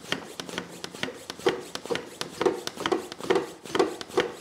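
Hand pump of a cooling-system pressure tester being worked in repeated strokes, each a short rubbing sound with a click. The strokes are pressurising the empty cooling system through the overflow reservoir for a leak test, with the pressure climbing past 5 psi.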